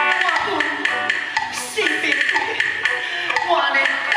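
A singer performing a song into a microphone over backing music with percussion, played through a stage sound system.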